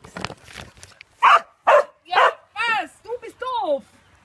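Young dog barking about six times in quick succession, starting about a second in; the first barks are short and sharp, the last ones longer and falling in pitch.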